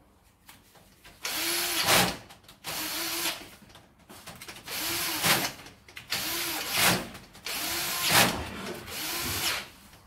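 Cordless power driver tightening circuit-breaker terminal screws in a distribution board, running in about six short bursts of around a second each. Most bursts grow louder at the end as the screw tightens.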